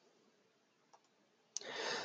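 Near silence, then a single sharp click about one and a half seconds in, followed by a short intake of breath.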